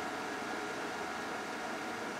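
High-capacity cooling fans of an industrial rack-mount computer running steadily: an even rushing noise with a faint steady hum in it.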